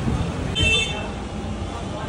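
Steady rumble of street traffic with a short, high-pitched vehicle horn toot about half a second in.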